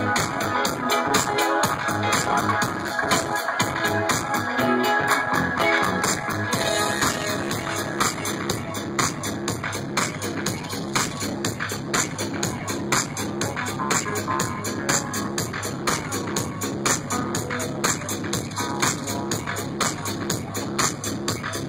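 Live electronic dance music with a steady beat, played over a concert PA and heard from within the crowd.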